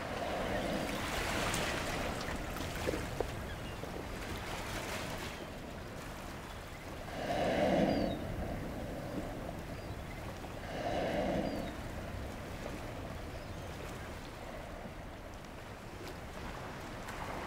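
Humpback whales blowing at the surface: two breaths, each about a second long, a little before halfway and again about three seconds later, over a steady hiss of water and wind.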